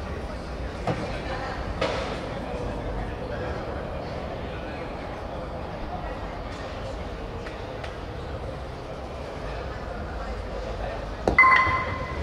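Low murmur of voices in a hall, then near the end one sharp knock with a brief ringing tone: a wooden bolos ball striking the pins.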